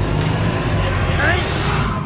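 Street traffic noise: a motor vehicle's engine running close by, with a steady low rumble, and a brief rising vocal sound about a second in.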